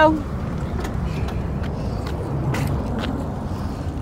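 Steady low outdoor rumble in a parking lot, with a couple of faint knocks a little past the middle.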